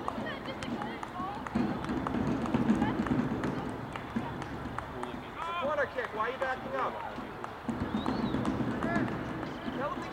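Indistinct shouts and calls from players and sideline spectators at a soccer match, over a low murmur of voices; a cluster of calls comes just past the middle and another near the end.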